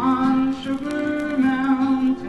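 Male voice singing long held notes over acoustic guitar, from a live solo acoustic performance.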